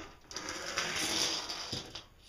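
Steel tape measure's blade running through its case with a steady rattling whirr for about a second and a half, ending with a light tick.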